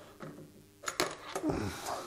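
A few sharp metallic clicks and knocks of a dial height-setting gauge being handled on a spindle moulder's metal table, followed by a short low murmur of a man's voice.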